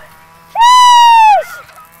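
A boy's loud, high-pitched yell, held for under a second and dropping in pitch as it ends, let out while flipping on a trampoline.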